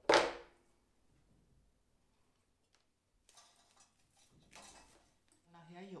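A single sharp clatter right at the start, dying away within half a second, then soft rustling a few seconds later as dry sprigs of white broom are handled and pushed into a glass bucket.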